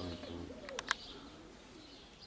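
Racing pigeons cooing softly, low rising-and-falling calls in about the first second, with three short sharp clicks just before one second in.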